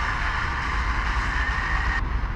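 FM radio static: a steady hiss from a Sony Ericsson phone's FM receiver tuned to 107.7 MHz, with no station coming through clearly.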